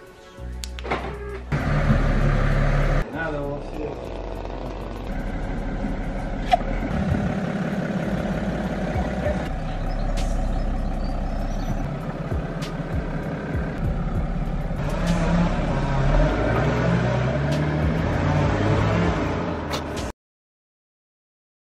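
Car engine and traffic sounds across a run of quick cuts, mixed with background music and indistinct voices.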